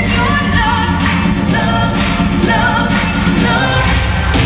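Live pop concert music: a singer's voice carries a melody, bending and holding notes, over a loud, steady band and synth backing with heavy bass.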